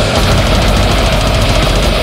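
Brutal death metal song playing loud and dense: heavily distorted guitars with strong low end and rapid drumming.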